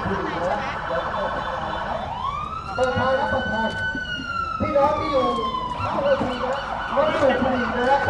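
Ambulance siren sounding one long wail: it rises about two seconds in, holds, then slides slowly down, over the murmur of crowd voices.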